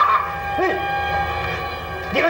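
A man imitating a dog, giving one short dog-like yelp about half a second in.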